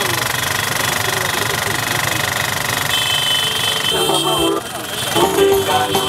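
Live street sound of motorcycle engines running amid crowd voices, with a steady high tone held for about four seconds; music comes back in about four seconds in.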